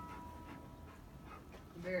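The final strummed chord of an acoustic guitar ringing on and fading away at the end of the song. A man's voice starts near the end.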